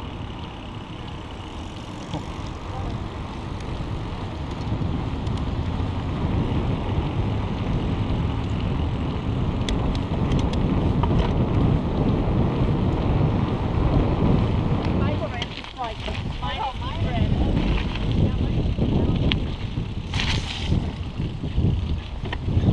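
Wind buffeting the microphone of a handlebar-mounted action camera as a mountain bike rolls along a paved trail, a steady loud rumble.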